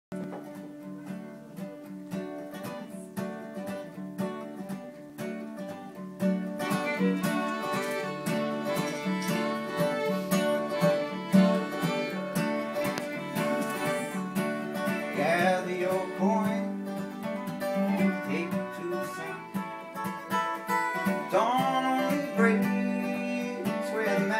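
Acoustic guitar and violin playing an instrumental folk intro. The guitar picks alone at first, and the bowed violin comes in about six seconds in, the music louder from there, with sliding notes.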